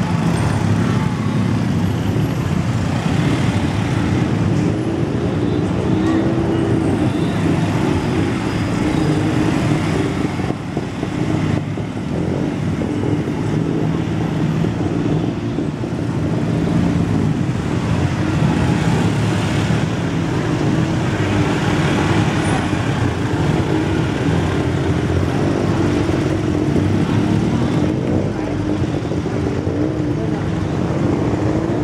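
Small motorcycle engine running close by as it rides through city traffic, its pitch rising and falling with speed, with other engines and street noise around it.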